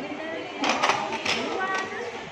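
People talking; only voices are heard.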